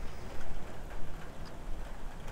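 Wind buffeting a clip-on microphone outdoors: an uneven low rumble under a faint steady hiss.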